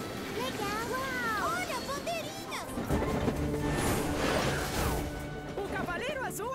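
Cartoon soundtrack: background music with swooping, gliding sound effects, then a loud rushing, crashing sound effect from about three to five seconds in.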